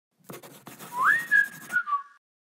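Whistle-like sound effect: one tone slides up, holds high, then drops back down near the end, over a run of quick scratchy clicks.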